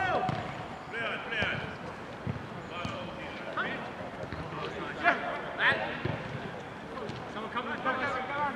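Players shouting to one another across a small-sided football pitch, with a few dull thuds of the ball being kicked.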